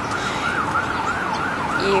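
An emergency vehicle siren wailing in a fast yelp, its pitch swinging up and down about three times a second.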